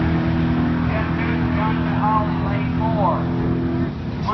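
A car engine idling at a steady pitch, stopping just before the end, with people's voices over it.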